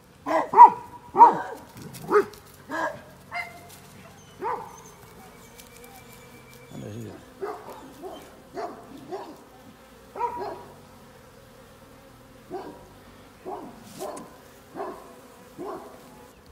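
A dog barking repeatedly, short calls in uneven groups, loudest in the first two seconds, over the faint steady hum of honeybees around an open hive.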